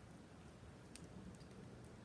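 Near silence with a few faint light clicks as the metal link bracelet of a watch shifts in the hand.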